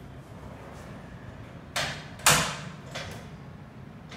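Steel folding brackets of a wall-mounted fold-down table clacking as they are worked: two sharp metallic knocks close together near the middle, the second the loudest, then a lighter knock about a second later.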